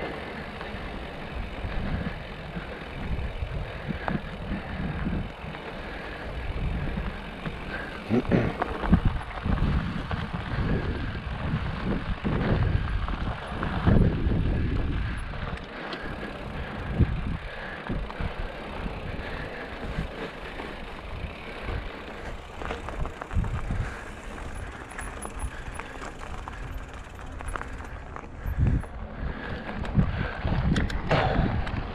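Mountain bike rolling over dirt and loose gravel: a continuous rough tyre-and-frame rumble with irregular louder jolts as it rides over bumps, busiest about a third of the way in.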